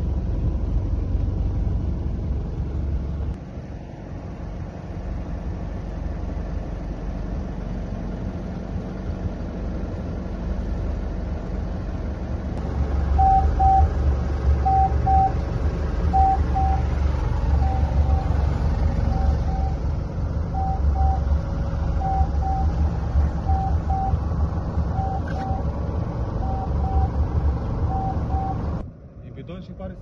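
A rescue boat's engine runs with a steady low rumble that grows louder about halfway through. Over it, an electronic alarm on the wheelhouse instruments beeps in double beeps about every second and a half until the sound cuts off near the end.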